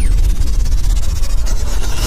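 Cinematic transition sound effect: a loud deep bass rumble under a steady hiss with a fine, rapid crackle.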